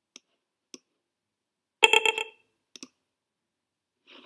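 Computer mouse clicks, sharp and single, while on-screen controls are operated. About two seconds in comes a louder, short cluster of rapid strokes carrying several steady pitches, followed by two more clicks.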